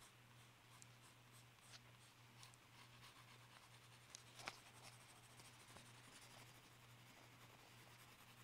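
Faint scratching of a red colored pencil shading on paper, with one sharper tick about four and a half seconds in, over a steady low hum.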